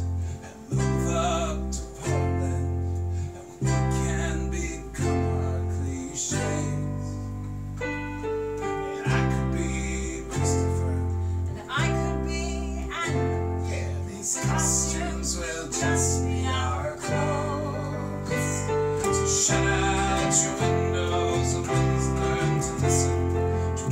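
A small band playing a song: electric bass notes changing about every second or so under a strummed small acoustic guitar and an electric keyboard.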